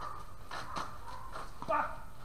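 Indistinct distant voices, too faint to make out words, with one short louder call near the end.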